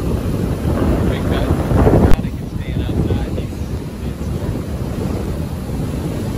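Strong onshore storm wind buffeting the microphone over the steady rush of heavy surf breaking on the beach. The wind swells to a loud gust about two seconds in that cuts off sharply, then it runs a little quieter.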